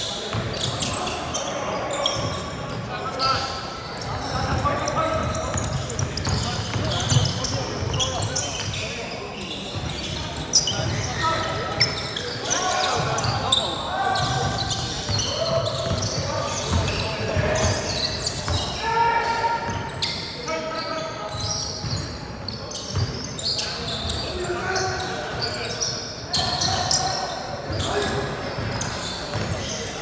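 Sounds of a basketball game in a large hall: a ball bouncing on the court as sharp thuds, and players calling out, all with the hall's echo.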